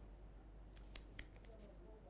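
Near silence: faint room tone with a few soft clicks about a second in.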